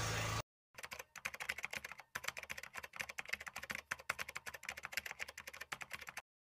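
A low background hum cuts off suddenly within the first half second. Then comes a quiet, rapid, irregular run of small keyboard typing clicks, several a second.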